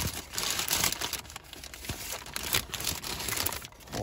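Paper burger wrapper crinkling as it is unfolded by hand, in uneven rustles.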